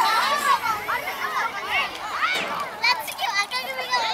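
Several children's voices shouting and calling out over one another in quick, short bursts, as young players call to each other during a youth football match.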